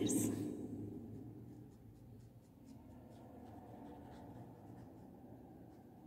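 Green felt-tip marker colouring on a paper textbook page: faint short strokes of the tip on the paper, about two or three a second.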